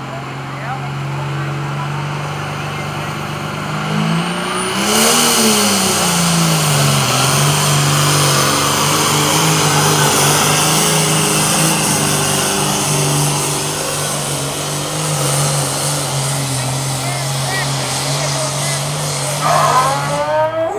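Diesel pulling tractor engine running hard under load as it drags the weight sled. Its note climbs and drops back about five seconds in, when a loud high hiss suddenly joins, then holds steady for the rest of the pull.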